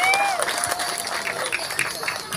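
Audience applauding, with a voice giving a short call that rises and falls just at the start.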